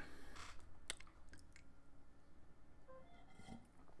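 Faint scattered clicks and light handling noises over quiet room tone, the clearest click about a second in.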